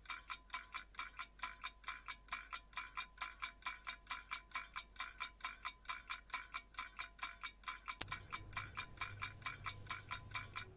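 A clock-ticking timer sound effect: an even, fast ticking, about five ticks a second, each tick with a light bell-like ring to it, marking a pause for answering.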